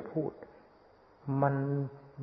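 Speech only: a man's voice giving a slow sermon in Thai. A phrase ends early on, there is a pause of about a second, and then one drawn-out word.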